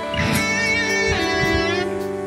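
Electric guitar being played: a held high note wavers in pitch with vibrato for about a second and a half.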